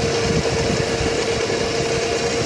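Wind rushing over the microphone on a moving electric scooter, with a steady whine from the scooter's motor underneath.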